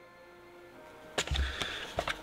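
Quiet room tone, then about a second in a low thump followed by a few light clicks and knocks: a box and its contents being handled and rummaged through.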